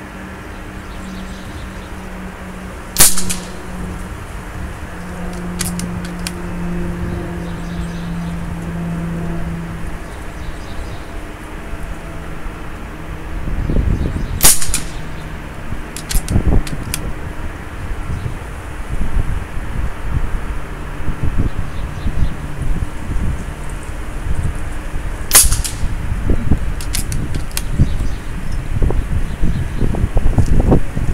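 Three shots from a .22 caliber FX Dreamline pre-charged pneumatic air rifle, each a sharp crack, spaced about eleven seconds apart. Each shot is followed a second or two later by fainter clicks.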